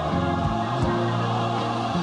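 Gospel choir music: voices holding sustained chords over a bass line.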